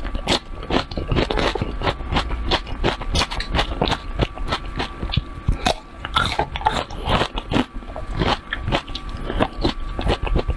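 Close-miked eating: a quick run of moist crunches and clicks as a mouthful bitten off a long pale stick of food is chewed.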